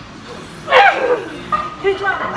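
A woman's strained vocal cry while pushing a heavily loaded leg press: one loud call falling in pitch about a second in, then shorter vocal sounds near the end.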